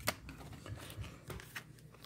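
Rigid plastic trading-card holders clicking and rustling against each other as they are handled and swapped: one sharper click at the start, then a few faint clicks.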